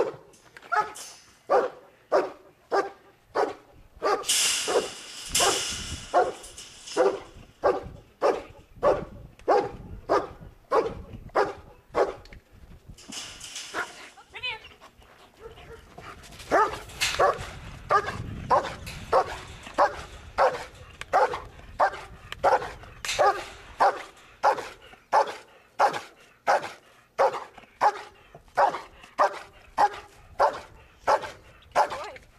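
German shepherd barking continuously at a steady rate of about two barks a second, directed at a protection-work helper in a bite suit. Two short stretches of hiss come in a few seconds in and about halfway through.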